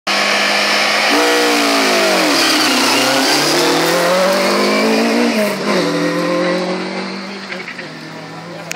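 Classic Mini rally car launching from a stage start. Its engine is held at steady revs, then the car pulls away about a second in. The revs dip, climb hard, drop once at a gear change, and the sound fades as the car drives off.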